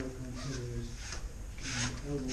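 Bare feet sliding and brushing on a foam training mat and heavy cotton practice uniforms rustling as two aikido practitioners move through a throw, with a louder brushing sweep near the end. A low voice murmurs underneath.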